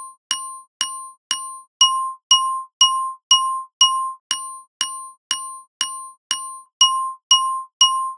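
A single glockenspiel note, sampled and looped about twice a second, EQ'd down to only its fundamental and harmonic peaks. What is left are pure ringing tones with the noisy, tuneless striking sound stripped away. The strikes grow louder about two seconds in.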